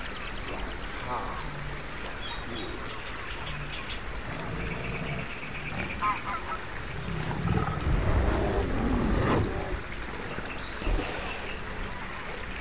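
Forest ambience with a deep bear growl swelling about seven and a half seconds in and lasting about two seconds, over scattered high chirps.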